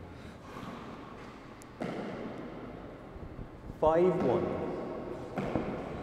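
Hardball handball ball striking the court, a sharp knock about two seconds in and another near the end, each ringing on in the hall's echo.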